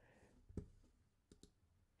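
Near silence with a few faint, short clicks: one about half a second in and two close together a little before the end.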